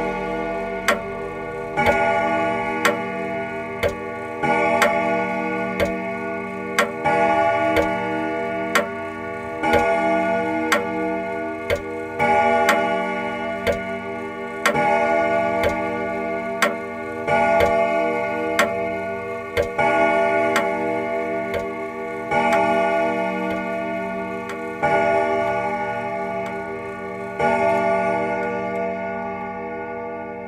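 A clock ticking about once a second over slow, sustained chords that swell anew every two or three seconds.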